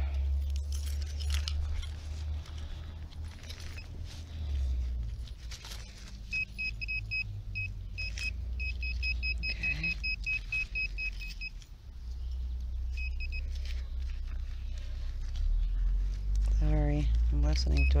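Handheld metal-detector pinpointer beeping in rapid, high-pitched pulses as it is worked through loose soil, signalling a buried metal target. The pulsing runs for several seconds from about a third of the way in, comes back briefly, then again near the end, over scratching of dirt and twigs and a steady low rumble.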